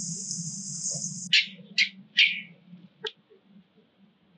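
An infant long-tailed macaque gives three short, shrill squeals that fall in pitch, about half a second apart, followed by a sharp click. Before them a steady high insect drone runs and cuts off suddenly about a second in.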